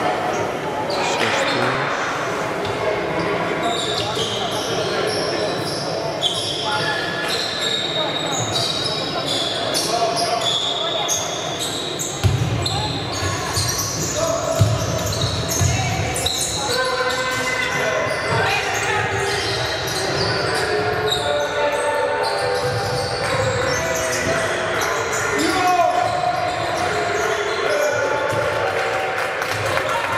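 Live basketball play on a hardwood court in a large, echoing hall. The ball is dribbled in repeated low bounces, mainly from the middle of the stretch on. Sneakers squeak in short, high chirps throughout, and players' voices call out.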